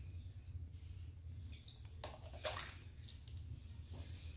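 Faint water sloshing and dripping as the media basket of a Fluval FX6 canister filter is lifted inside the water-filled canister, with a couple of brief splashy sounds about two seconds in, over a steady low hum.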